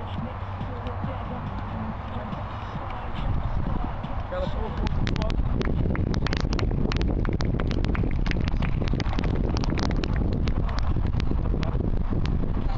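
Football being juggled: repeated soft thuds of the ball against foot and knee, coming several times a second from about five seconds in, with people talking in the background.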